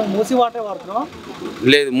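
Voices over a low, steady engine rumble, which cuts off suddenly near the end as clear speech starts.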